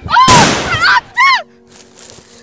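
A single loud gunshot about a quarter second in, its blast fading over half a second, with a person's short shouted cries over it and another cry just after a second in.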